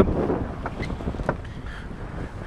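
Wind blowing across the microphone aboard a sailboat under sail, with the wash of water along the hull underneath. A few faint ticks come around the middle.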